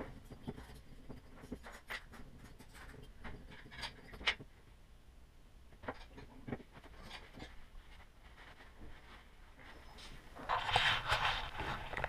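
Scattered light clicks and taps of small metal engine parts being handled and set down on a tabletop during teardown of a nitro RC engine. A louder rustling noise comes in near the end.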